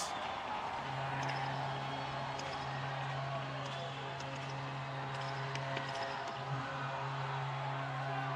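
Hockey arena crowd noise just after a goal, with a steady low drone that breaks briefly a couple of times and a few faint clicks.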